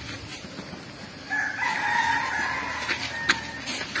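A single drawn-out, high-pitched animal call lasting about two seconds, starting just over a second in and fading out near the end.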